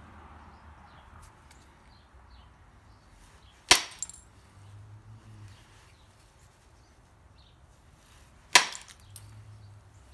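Two sharp cracks, about five seconds apart, as an antler billet strikes the edge of an obsidian piece to drive off flakes, each followed by a brief ring and a few small clicks.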